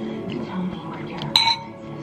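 A metal spoon clinks once against a dish of soup, a short ringing strike about one and a half seconds in, over steady background music and faint speech.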